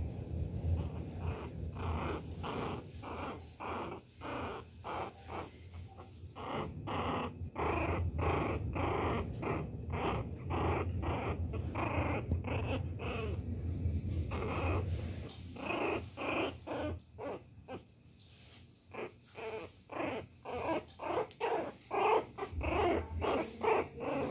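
A pinscher puppy play-growling in short, rapid bursts, about two a second, while mouthing and biting at a hand. The bursts pause briefly about three-quarters of the way through.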